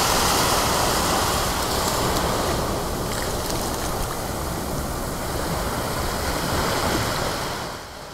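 Ocean surf breaking and washing on a beach, a steady rushing noise that swells near the start and again toward the end, then drops away just before the end.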